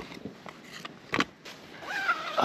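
Camping gear being handled: a few light clicks and knocks, then one short, louder rasp about a second in.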